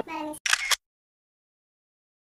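Camera shutter sound effect: one quick double click about half a second in, just after the last note of the music dies away.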